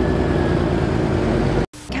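A feed mixer wagon's engine and machinery running steadily as it unloads feed. The sound cuts off abruptly near the end.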